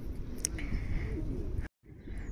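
Faint outdoor background with a soft bird call, possibly a dove cooing, that cuts off abruptly near the end.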